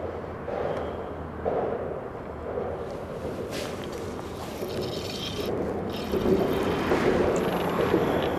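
Wind rumbling on the microphone over water lapping at a boat's hull, with one brief sharp sound about three and a half seconds in.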